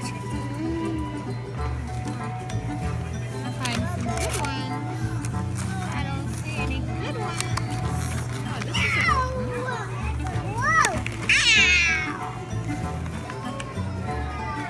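Background music with a steady beat, over which a toddler gives several loud, high-pitched squealing calls that glide up and down, about nine and eleven seconds in.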